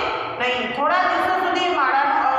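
A woman speaking, reading aloud from a book in a steady, lecture-like voice.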